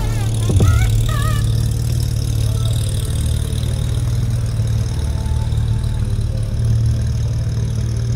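BMW E28 M535i's straight-six engine running steadily at low revs as the car rolls off slowly, with a deep even drone.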